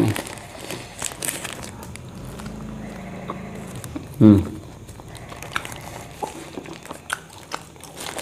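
Chewing a mouthful of burger with scattered small crackles from the paper wrapper being handled, and a short hummed "mm" about four seconds in.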